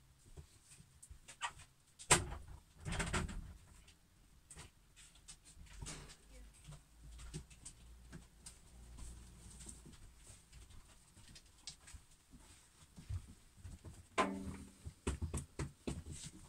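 Faint sounds of a pet dog close by in a small room: scattered small clicks and rustles, with a sharp knock about two seconds in.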